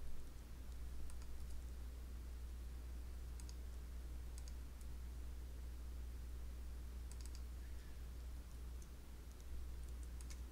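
Faint computer mouse clicks, a few at a time and irregularly spaced, placing the points of polygons in CAD software, over a steady low hum.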